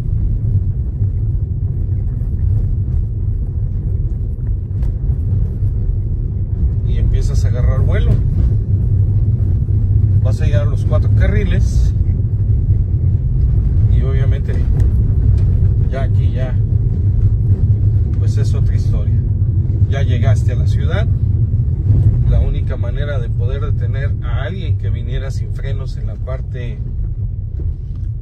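Steady low rumble of a car driving on a rough road, heard from inside the cabin, with a man's voice talking at times from about seven seconds in.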